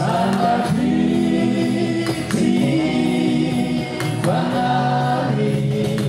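Male voices singing long held notes in harmony, accompanied by acoustic guitar and cajón.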